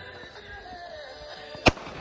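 A single M1911 pistol shot, one sharp loud crack about a second and a half in.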